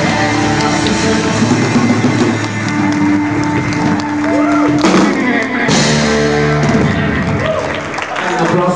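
Live band playing a rock-style worship song on electric guitar, drums and keyboard, with long held chords and a change about five seconds in.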